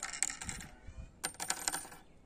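Short lengths of thin steel wire clinking as they are set down on a wooden tabletop: two quick clusters of light metallic clicks, one at the start and another about a second and a quarter in.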